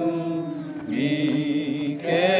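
A group of people singing a slow hymn together in long held notes with vibrato; a new phrase begins about a second in.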